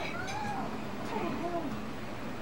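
A domestic cat meowing several times, short calls that rise and fall in pitch.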